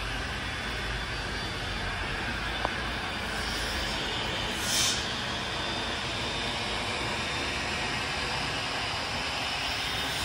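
Steady outdoor background noise, an even rumble and hiss of the kind distant traffic makes, with a brief swell of hiss about halfway through.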